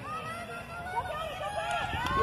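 Overlapping shouts and chatter of spectators and young players, calling out across an open field.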